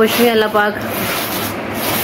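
A woman's voice for about the first half second, then a steady rushing noise under a constant low hum.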